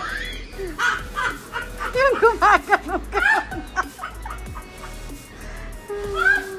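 A woman laughing hard in a quick run of short 'ha' bursts, about four a second, loudest from about two to three and a half seconds in, after a rising whoop at the start.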